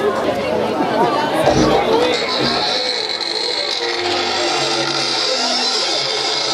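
A live band and audience voices in a club: chatter and shouts over a few low bass notes and thumps, with a steady hiss setting in about two seconds in.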